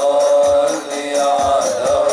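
Islamic sholawat devotional music: a group of voices chanting a melody in unison, over hadroh rebana frame drums and a bass drum keeping a steady beat.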